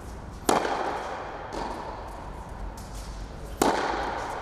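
Tennis racket striking the ball twice, hard and sharp: a serve about half a second in and another shot near the end. Each hit is followed by a ringing echo off the indoor hall. Fainter hits and bounces from the far end of the court fall in between.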